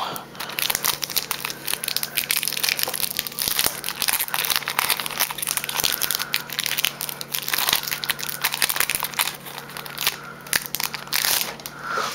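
Foil wrapper of a Pokémon trading card booster pack crinkling and crackling continuously as hands work it open.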